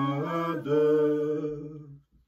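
Three voices, two women and a man, singing a slow worship chorus unaccompanied, holding long notes. The singing fades out near the end.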